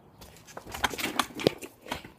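A string of irregular sharp clicks and knocks, starting about half a second in and loudest near a second and a half.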